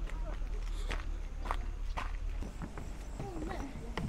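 Footsteps on a gravel path, about two steps a second, with faint voices of other people in the background.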